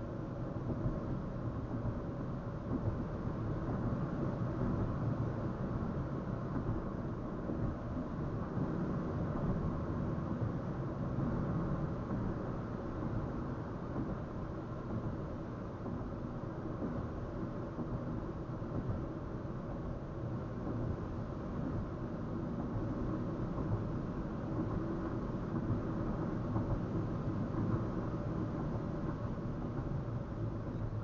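A car driving steadily on a concrete highway, heard from inside the cabin through a dash cam's built-in microphone: an even, low rumble of tyre and engine noise.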